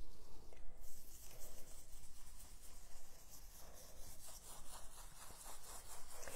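Stencil brush bristles brushing dry chalk paint through a stencil onto brown paper: a run of quick, light strokes of bristles on paper.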